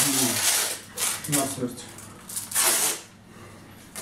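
Velcro straps of wrist weight cuffs being pulled open: two long tearing rasps, the first in the opening second and the second about two and a half seconds in, with a few words spoken between them.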